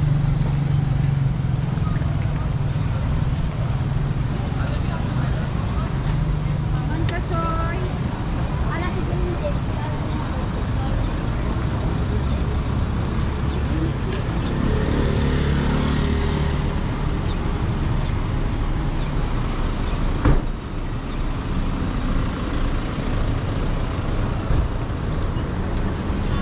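Busy street traffic: vehicle engines idling and passing, with a steady low hum that is strongest at first and a swell of noise as a vehicle goes by a little past the middle. Snatches of passers-by talking, and one sharp knock about twenty seconds in.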